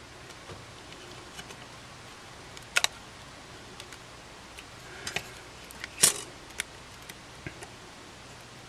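Sparse small clicks and taps of plastic and metal parts being handled inside a Samsung WB350F compact camera as flex cables are worked into their connectors; a double click about three seconds in and the loudest tap about six seconds in.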